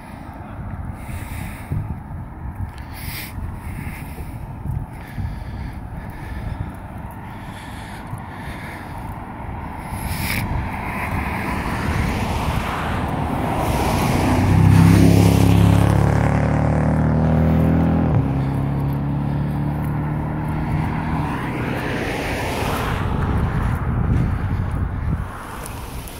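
A vehicle rolling slowly along a gravel road shoulder, its engine and tyres making a continuous low rumble. About halfway through, a louder engine drone with a steady pitch comes in for several seconds, then eases back.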